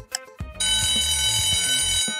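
A countdown clock's tick, then an alarm-clock ringing sound effect from about half a second in, ringing steadily: the signal that the quiz timer has run out. Background music plays under it.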